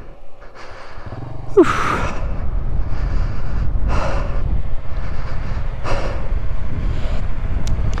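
Motorcycle being ridden over gravel, its engine mixed with heavy wind buffeting on the microphone. The rough noise starts with a brief falling tone about one and a half seconds in and surges a few times.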